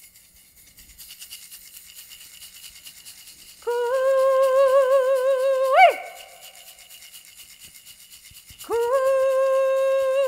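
A hand rattle shaken steadily throughout, with a woman's voice sounding two long held notes in an opening prayer song. Each note slides up into its pitch, wavers slightly and ends in a quick upward swoop before dropping away; the second is still sounding at the end.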